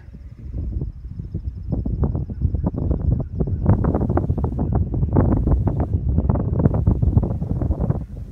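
Wind buffeting a phone's microphone in irregular gusts, a rough rumble that grows louder about two seconds in.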